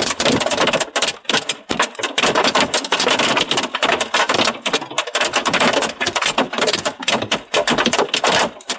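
Hailstones pelting the glass and body of the shelter the storm is filmed from, a dense, rapid clatter of hard impacts.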